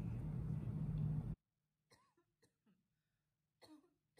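Steady room noise with a low hum that cuts off abruptly about a third of the way in, leaving near silence broken by a few faint, short sounds, the clearest just before the end.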